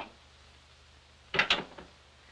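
A door shutting: two sharp knocks close together about a second and a half in, over a faint steady hiss.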